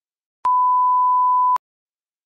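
A multimeter's continuity beep: a single steady tone about a second long, starting and stopping with a click, the tester ringing out across relay contacts to show a closed path.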